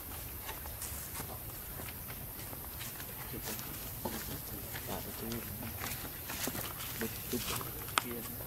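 Scattered light clicks and crinkles of a thin clear plastic cup and bag as a baby macaque handles them, with faint voices in the background from about three seconds in.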